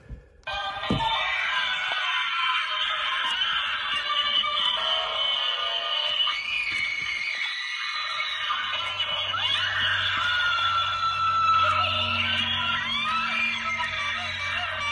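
Tekky Toys Animated Terror Clown animatronic playing its music through its small built-in speaker, a thin, tinny sound without bass that starts about half a second in. A low hum joins from about halfway through as the figure moves.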